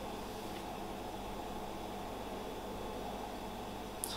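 Steady room tone: an even low hiss with a faint hum underneath, no distinct events.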